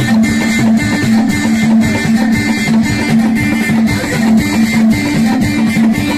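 Live Moroccan chaabi music: an amplified lotar, a skin-topped long-necked lute, being plucked over a steady drumbeat, with sustained held melody notes.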